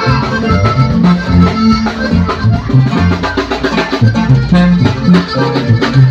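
Live norteño-banda music in an instrumental passage: a button accordion carries the melody over a sousaphone bass line that steps from note to note, with guitar strumming and a steady drum beat.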